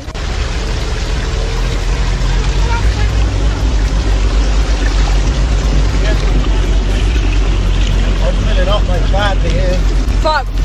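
A vehicle engine running steadily with a low rumble under a constant wash of rushing water, as the vehicle moves through deep water. Voices call out briefly near the end.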